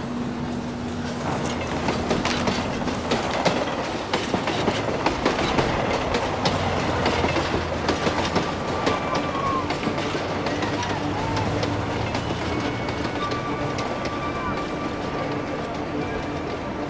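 Train running on the rails: a steady rumble and rattle with a dense clatter of wheel clicks, and thin high squeals in the second half.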